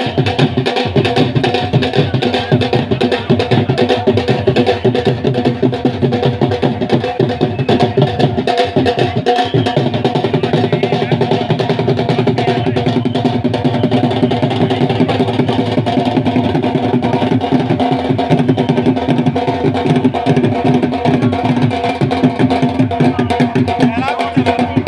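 Dhol drum beaten in a fast, continuous rhythm, with steady sustained tones sounding over it and voices in the background.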